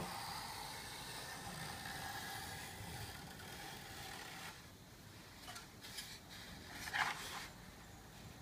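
Faint scraping and rubbing of a small hand plane and fingers along a wooden wing leading edge, fading after about four seconds. Then light handling taps and a short scrape near the end.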